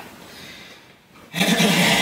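A man coughing loudly: one rasping burst about a second long, starting just past halfway.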